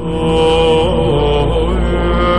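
Background music: a droning, chant-like track of long held tones over a low hum, with a slight waver in pitch about a second in.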